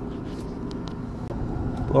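Steady low mechanical hum, with a few faint light clicks in the first second; a man's voice starts at the very end.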